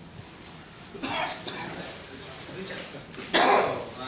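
A person coughing: a short cough about a second in and a louder one near the end, with faint murmured speech between.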